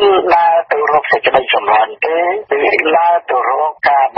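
Only speech: a single voice reading news narration at a steady pace, broken by short pauses between phrases, with a thin, narrow tone.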